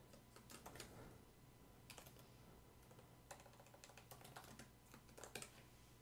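Faint typing on a computer keyboard: irregular keystrokes, some in quick runs of several.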